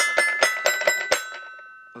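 Little Tikes Jungle Jamboree Tiger 2-in-1 toy piano/xylophone playing a quick run of bell-like struck notes, about five a second. The run stops about halfway through and the last notes ring on and fade.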